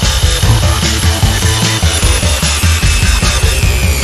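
Handheld circular saw running steadily with a high whine as it cuts through two-inch foam insulation board, heard over background music with a heavy beat.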